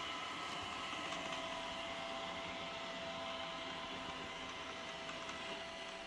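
iRobot Roomba robot vacuum running as it drives across carpet, a steady motor whine with a couple of held tones, easing off slightly near the end.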